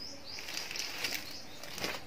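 Faint rustling of folded saree fabric as one saree is lifted off the display cloth and another laid down in its place.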